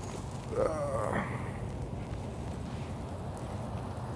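A brief murmur from a man's voice about half a second in, over a steady low background hum.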